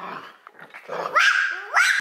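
Dog barking twice, about a second in and near the end, high barks that rise in pitch.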